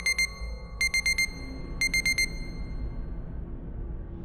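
Electronic alarm beeps, a warning sound effect: quick runs of four short, high beeps, repeated about once a second, three times, then stopping. Low ambient music drones underneath.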